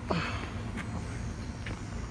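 Handling noise from a plastic RC model truck being lifted out of its foam case and set down on a pickup's bed liner: a brief scrape, then a few light clicks, over a steady low outdoor rumble.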